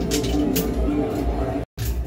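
Arcade background music over a steady low machine hum, with a few sharp clicks early on. The sound cuts out completely for a moment near the end.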